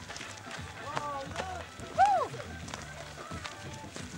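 People's voices with no clear words, including one loud call about two seconds in whose pitch rises and then falls, over a low steady hum.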